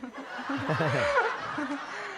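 A concert audience laughing together, with one laugh falling in pitch near the middle.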